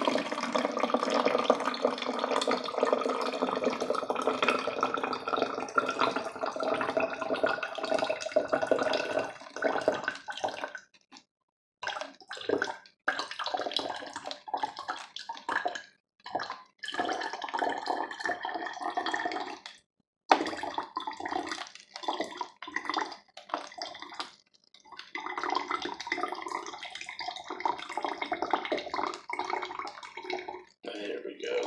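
Water poured in a thin stream from an aluminium can into the narrow mouth of a plastic water bottle, splashing and gurgling as it fills. It runs steadily for about the first ten seconds, then stops and starts several times.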